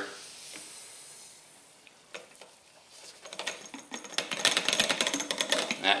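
Hodgdon Titegroup smokeless powder poured from its jug into the clear plastic hopper of an RCBS Uniflow powder measure: a dense patter of fine grains that starts about three seconds in and builds.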